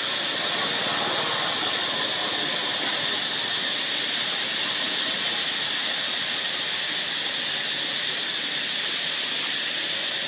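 Steady insect chorus: a shrill, unbroken high-pitched drone over an even hiss, holding the same level throughout.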